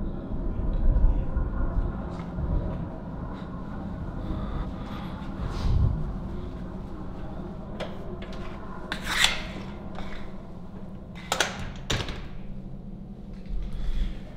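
Low rubbing and shuffling handling noise, with three sharp knocks in the second half.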